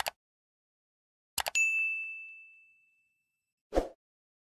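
Sound effects for an on-screen subscribe animation: a quick double mouse click, then another, followed by a single bell ding that rings and fades over about a second and a half. A short whoosh comes near the end.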